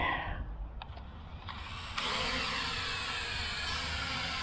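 Small budget quadcopter (P7 Pro Max) motors spinning up about halfway through, a sudden high buzzing whine that then holds steady as the drone lifts off the grass.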